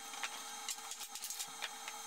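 Bar clamps being released and handled on a wooden workbench: a quick string of irregular clicks, clacks and knocks over a steady hum.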